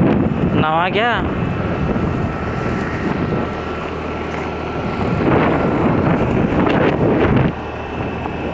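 Wind rushing over the microphone while moving, with a steady low hum of a vehicle engine underneath. The wind noise swells louder for a couple of seconds near the end.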